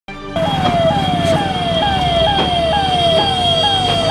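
Ambulance siren: a loud wailing tone that slides down and snaps back up about twice a second, over a steady high tone and low traffic rumble.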